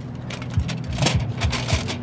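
Aluminium foil crinkling and crackling as a hand handles the foil cover stretched over a metal bowl.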